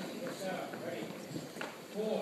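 Low, indistinct murmur of voices in a large room, with a few sharp taps or clicks, one of them about one and a half seconds in.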